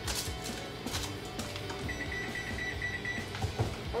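Oven's preheat signal: one steady high beep lasting about a second and a half, starting about two seconds in, signalling that the oven has reached its set temperature.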